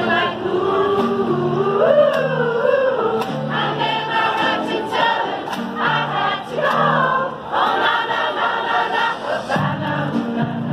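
A large choir, mostly women's voices, singing together, with held notes and gliding melody lines.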